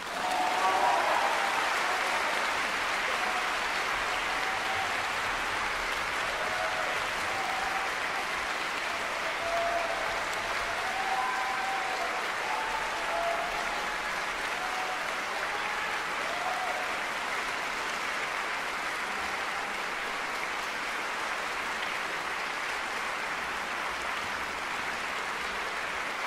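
Audience applauding, a dense, even clapping at a steady level, with a few faint calls from the crowd in the first half.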